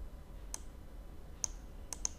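Computer mouse button clicking three times, short and sharp, about half a second in, about a second and a half in and near the end, as colours are picked in a software window.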